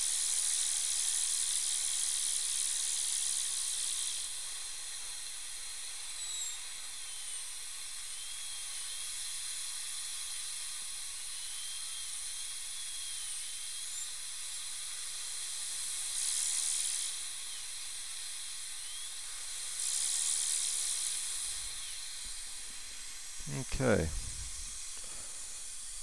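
High-speed dental handpiece cutting a crown preparation, a hiss of air and water spray over a steady suction hiss. It is louder for about the first four seconds and in two shorter spells later, with a faint whine that wavers in pitch in between.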